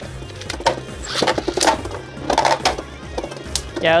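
Two Beyblade Burst spinning tops whirring against each other in a plastic stadium, with several sharp clacks as they collide, one of them a big hit. Background music plays underneath.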